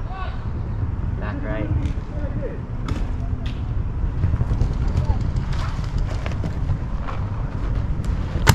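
Paintball game: distant shouting voices over a steady low rumble of wind on the microphone, with scattered sharp pops of paintball markers firing, a few around three seconds in and more near the end.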